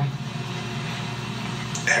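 A steady low hum, with no other event until a man's voice starts right at the end.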